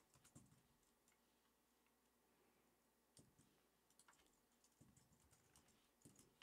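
Faint computer keyboard keystrokes: a few clicks at the start, then a scattered run of them from about three seconds in.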